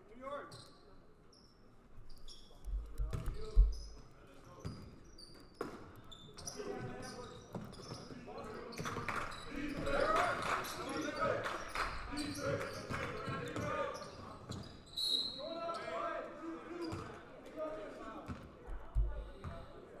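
Basketball bouncing on a hardwood gym floor during live play, with a sharp knock a few seconds in, amid players' and spectators' voices.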